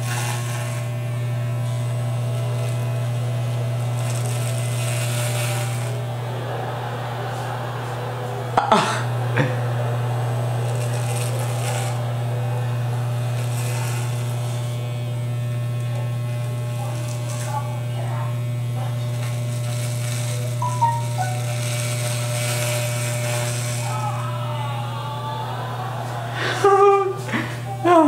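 Electric hair clippers fitted with a guard, buzzing steadily as they run through hair. A brighter rasp comes in stretches as the blades bite into the hair, and there is a single click about a third of the way in.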